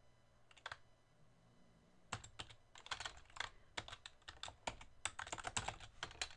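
Typing on a computer keyboard: a single keystroke, then a quick, irregular run of keystrokes from about two seconds in.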